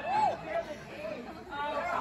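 Indistinct voices and chatter with no clear words, with a short rising-and-falling vocal sound just after the start.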